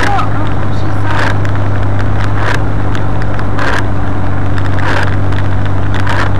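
Car engine and road noise heard from inside the moving car, a loud steady drone, with a short swish about every second and a quarter from the windscreen wipers sweeping a wet screen.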